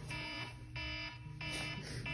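Electronic alarm ringing, a pitched beeping tone repeating about every 0.6 s, going unanswered by a sleeper.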